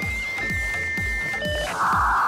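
Electronic robot sound effects: two long, steady beeping tones, a short higher blip, then a loud harsh static buzz starting near the end. Background music with a low beat about twice a second runs underneath.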